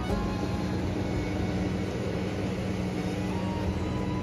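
Motorboat engine running steadily as a speedboat crosses the lake, with a low hum under a noisy wash.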